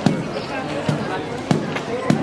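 A beat of low thumps, about one every half second and not quite even, accompanying a street dance, over the voices of the crowd.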